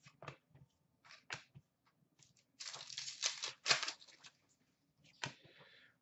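Hockey trading cards being handled and slid against one another: quiet scattered flicks and clicks, with a longer stretch of rustling card-on-card sliding in the middle and one sharp click near the end.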